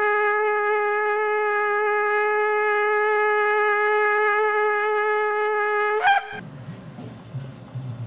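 A shofar sounding one long, steady held note that flicks upward in pitch and cuts off about six seconds in, followed by quieter low background noise.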